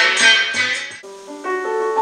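Music played through homemade DML flat-panel speakers: rigid foam-board panels driven by 32 mm Dayton Audio exciters. A track with drums and cymbals fades out in the first second, and a slower keyboard piece with held notes begins.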